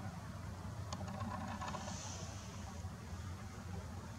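Quiet background: a steady low hum with faint hiss and a few light clicks about a second in.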